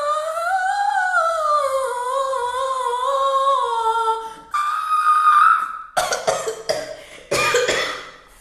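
A woman's voice singing a wordless, unaccompanied melody: a long wavering line that rises and falls for about four seconds, then one held higher note, then a run of short clipped vocal bursts near the end.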